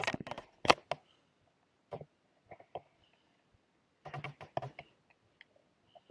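Handling noise on a small camera: a sharp click under a second in, then scattered small taps and rubs in a couple of short clusters, with near silence between.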